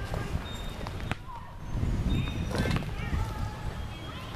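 Footsteps and handling rumble on a handheld camera's microphone, with faint distant voices and a sharp click about a second in.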